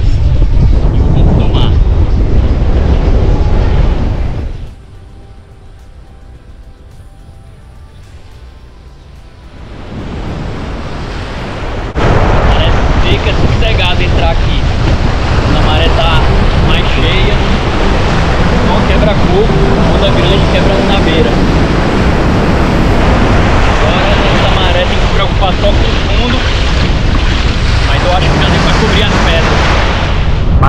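Wind buffeting the microphone, dropping to a much quieter stretch for several seconds, then surf washing and breaking around a person wading into the sea, with wind noise on the microphone.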